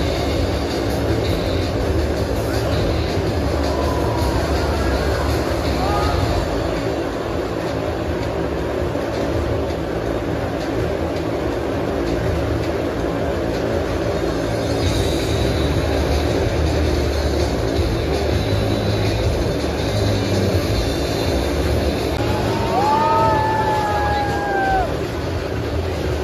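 Motorcycle engines running steadily as the bikes circle inside a steel-mesh globe of death, heard over loud show music.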